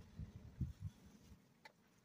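Faint soft scuffing and rustling of hands digging through moist worm-bin compost, with one small click about a second and a half in.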